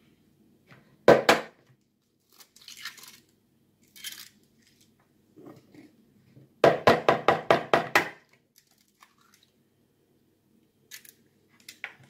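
Two eggs cracked against the rim of a mixing bowl and broken open: one sharp knock about a second in, faint shell crackles, then a quick run of about eight knocks, some six a second, a little past halfway.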